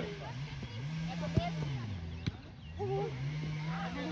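Football being kicked during a youth match: two sharp thuds, one about a second and a half in and another just past two seconds, with distant children's voices. Underneath runs a low hum that slowly rises and falls in pitch.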